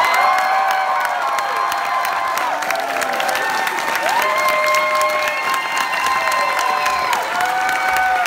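A theatre audience applauding and cheering, with several long high-pitched screams held over the clapping, dying away and starting up again a few times.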